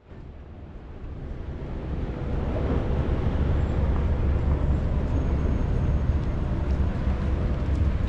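Outdoor street ambience: a steady low rumble of distant traffic that fades in over the first two seconds, then holds level.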